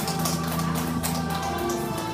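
Karaoke backing track playing an instrumental passage without singing, with several people clapping along.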